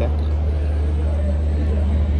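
Steady, unbroken low rumble of a train standing at a railway station platform, with a faint haze of station noise above it.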